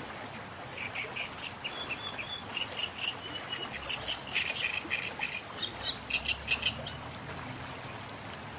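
Birds chirping in a quick run of short high calls, with a steady background hiss beneath. The calls start about a second in and stop about a second before the end.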